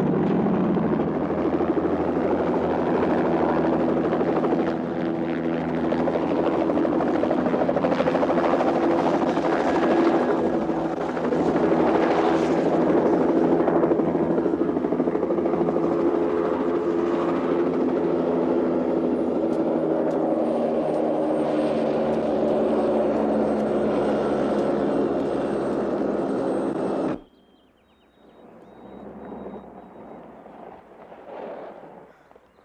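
Helicopter running loud and steady as it flies in and sets down, its rotor and turbine heard throughout; the sound cuts off suddenly near the end.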